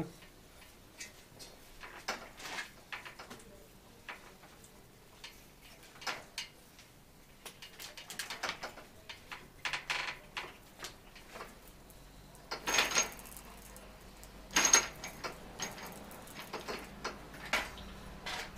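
Scattered metallic clicks and clinks of a tool working at a vintage Göricke bicycle's bottom bracket as the bearing cups are pressed into the frame. Near the end come two louder, ringing metal knocks about two seconds apart.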